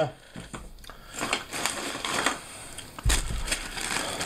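Thin clear plastic bag crinkling and rustling as it is handled, with a dull low bump about three seconds in.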